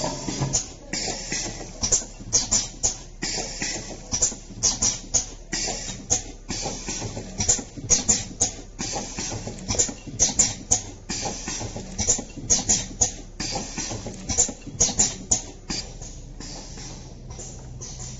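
Honey stick-pack packing machine running: a rapid, uneven clatter of clicks and short hissing strokes over a low steady hum, easing off in the last couple of seconds.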